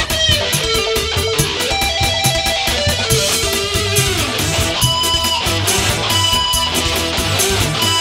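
Live dangdut music in an instrumental passage between sung lines: a plucked-string lead, most like electric guitar, over a steady drum beat and bass.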